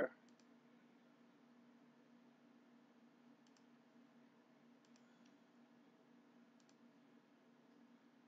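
Near silence with a low steady hum and a handful of faint computer mouse clicks spread through it.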